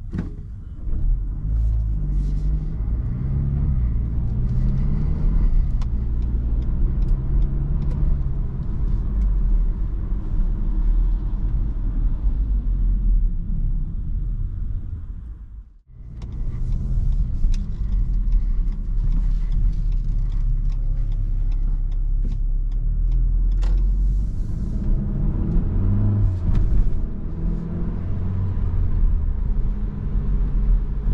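Mitsubishi ASX II's 1.3-litre four-cylinder petrol engine driving at low city speeds, heard from inside the cabin over road rumble, its note rising and falling as the car pulls away and changes gear. The sound drops out briefly about halfway through.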